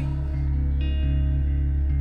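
Slow, reverberant band accompaniment between sung lines: electric guitar over a sustained low bass note, with a new higher chord entering about a second in.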